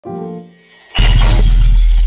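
Logo intro sound effect: a short pitched tone, then about a second in a sudden loud hit with a heavy low boom and a bright crashing sound that rings on.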